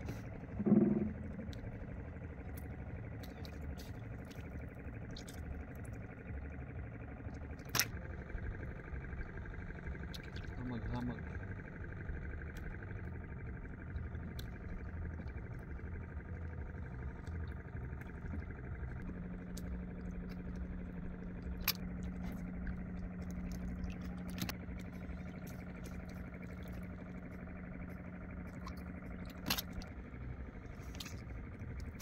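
Low steady rumble of a small boat out on open water, with scattered light clicks and knocks as a fishing hand line is hauled and handled. There is a brief vocal sound about a second in, and a steady low hum comes in about two-thirds of the way through.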